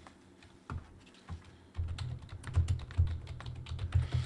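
Typing on a computer keyboard: a few scattered clicks, then a quick run of keystrokes from about two seconds in as a search phrase is typed.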